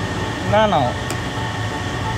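A steady low background hum, with a brief spoken "na, na" about half a second in.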